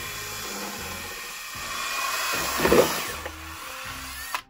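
Cordless drill with a paddle mixer spinning steadily in a bucket of thick cement-based resurfacer slurry, the motor running with a faint whine. A louder surge comes a little before three seconds in.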